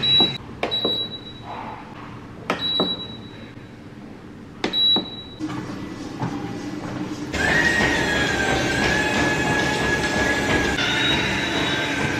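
Treadmill console buttons pressed, each press giving a click and a short high beep, four times in the first five seconds. Then the treadmill's motor and belt start up and run, growing louder about seven seconds in, with a steady whine.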